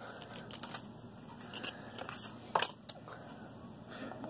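A foil trading-card pack wrapper crinkling and being torn open while cards are handled. It is soft rustling with a few sharp crackles, the loudest about two and a half seconds in.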